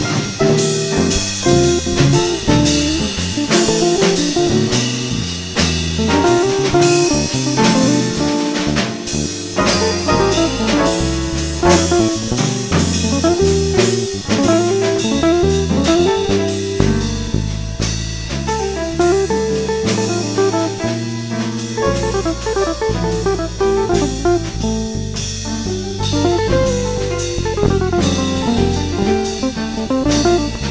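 Instrumental jazz: a guitar plays a melodic line over a bass stepping from note to note and a drum kit keeping time on the cymbals.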